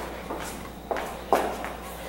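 A few light knocks and clicks about half a second apart, handling sounds around the pot.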